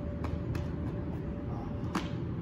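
A steady low rumble with a faint constant hum over it, broken by a few light ticks about a quarter second, half a second and two seconds in.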